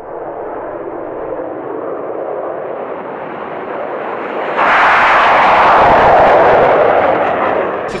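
Saab JAS 39 Gripen fighter's single Volvo RM12 turbofan at takeoff power as the jet rolls down the runway and lifts off. It is a steady rushing noise that grows slowly louder, then jumps abruptly louder and brighter about four and a half seconds in as the jet passes close.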